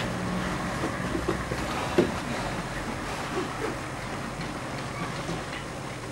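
Footsteps and shuffling of several people coming into a hallway, with a sharp knock about two seconds in, over a steady low rumble.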